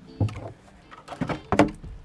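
Hard knocks and scrapes of a plastic barrel's lid being handled and opened: a single clack early, then a quick cluster of knocks with a short creak, loudest about one and a half seconds in.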